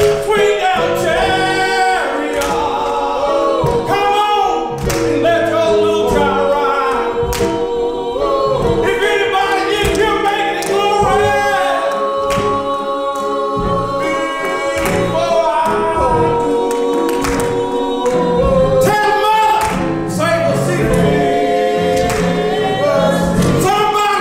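Gospel singing: a man sings into a microphone with a group of voices joining in, over a steady beat with hand clapping.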